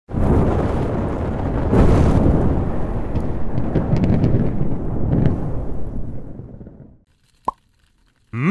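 Intro logo sound effect: a fiery explosion-like rumble that starts abruptly, swells about two seconds in, then fades away over several seconds. A single short pop follows near the end.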